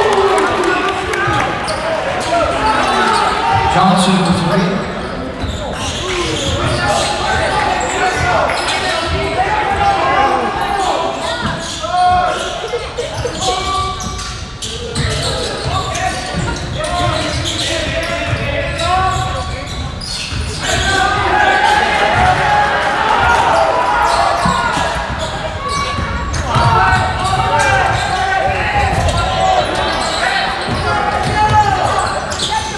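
A basketball game in a gym: a basketball bouncing on the hardwood court, mixed with steady talking and shouting from players and spectators.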